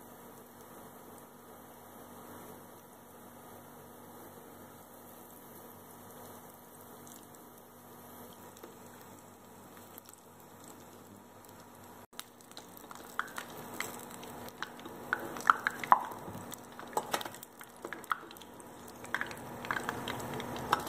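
Battered potato slices (potato bajji) deep-frying in hot oil in a frying pan: a faint steady sizzle that turns into louder crackling and popping with sharp clicks about halfway through.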